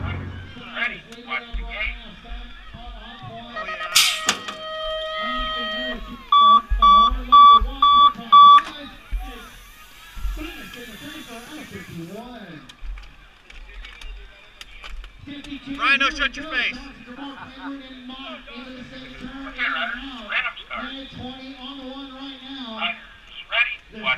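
Unclear voices, with electronic tones among them: one long tone about four seconds in, then four loud, short, evenly spaced beeps. The beeps are the loudest thing heard.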